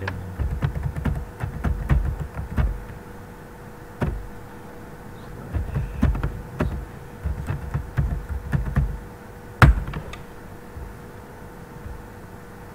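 Computer keyboard keystrokes in quick runs of typing with short pauses, then one single, much louder key press about two-thirds of the way through.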